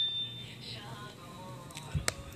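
A bell-like ding dying away in the first half-second, then a faint quiet stretch with a soft tap near the end.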